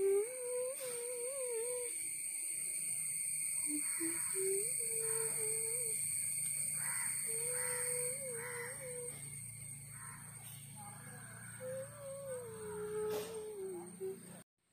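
A person humming a slow, wavering tune in four short phrases with pauses between them, over a steady high-pitched background whine.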